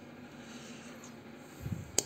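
Quiet room noise with a faint steady hum, and a single sharp click at the very end as a button on the Zanussi Venezia vending machine's control panel is pressed.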